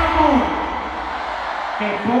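A man's voice through an arena PA system; his phrase trails off about half a second in. A wash of crowd noise follows in the large reverberant hall, and his voice starts again near the end.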